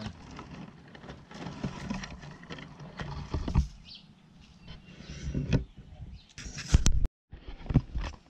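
Dry leaves and twigs rustling and crackling as a handheld camera moves through a leaf-strewn flower bed, with scattered sharp crackles throughout. A louder burst comes about seven seconds in, followed by a brief dropout.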